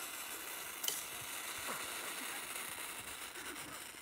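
Steady hiss of snow melting and sizzling against the hot cylinder and exhaust pipe of a Kawasaki KLX140L dirt bike, with one faint click about a second in.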